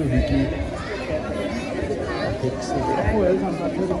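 Indistinct chatter: several voices talking over one another in a room, none clearly understood.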